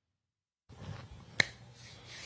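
Dead silence, then faint studio room noise with a low steady hum cuts in about two-thirds of a second in as the live microphone opens. A single sharp click follows about halfway through.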